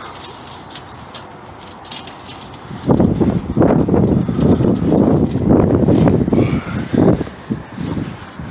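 Irregular rumbling noise on a phone's microphone as it is handled and moved about, starting about three seconds in and fading near the end.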